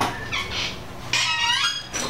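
Glass-panelled door being opened: a click, then short squeaks and a longer squeal whose pitch bends, in the second half.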